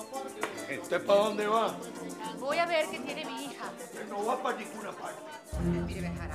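People talking over background music, with a deeper musical layer coming in near the end.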